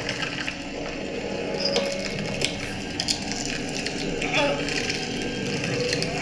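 Horror-film sound effects of a man's skull being crushed between hands: a run of wet cracks and crunches, with a short vocal sound about four seconds in.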